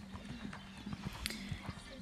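Faint horse hoofbeats: a few soft, irregularly spaced knocks over a faint steady low hum.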